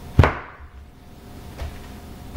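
A large kitchen knife cutting down through a cabbage wedge and striking a plastic cutting board: one sharp knock just after the start, then a much fainter knock about a second and a half in.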